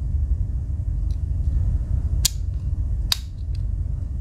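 Two sharp clicks, a little under a second apart past the middle, as the Victorinox Spartan's steel tools snap against their backsprings while being folded and opened, with a few fainter ticks. A steady low hum runs underneath.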